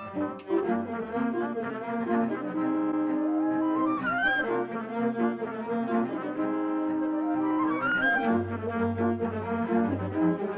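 Background music from a multitrack overdubbed ensemble recording, with brass instruments to the fore, playing sustained layered notes. Two upward slides in pitch come about four seconds in and again about eight seconds in.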